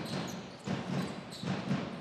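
A drum beaten in the handball crowd, in a steady rhythm of about three low thuds a second, over general arena crowd noise.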